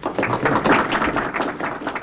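Audience applauding, starting abruptly and continuing as a steady patter of many hands clapping.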